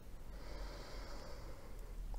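The reader's faint breath in through the nose between sentences, lasting about a second and a half.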